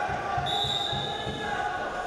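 Dull, irregular thumps of wrestlers' feet and hands striking on the wrestling mat, over the noise of an indoor arena with shouting voices. A short high steady tone sounds from about half a second in to about a second and a half.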